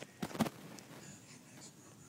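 Toy figures and miniature dollhouse furniture handled on a table: two quick knocks near the start, then faint scraping and rubbing.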